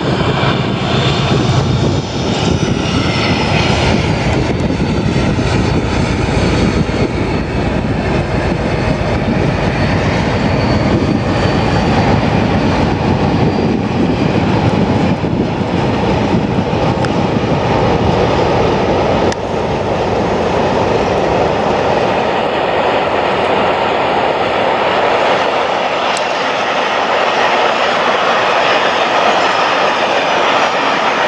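Class 56 diesel locomotive's Ruston-Paxman V16 engine working hard under power, a loud, steady screaming note as it hauls its train. This high-revving scream is the typical Class 56 'thrash'.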